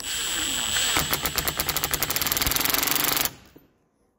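Cordless drill run in reverse, screwing a hose-end fitting onto a braided hose clamped in a vise: a steady whir, then from about a second in a rapid, even clatter as the load comes on. It stops suddenly near the end as the fitting bottoms out.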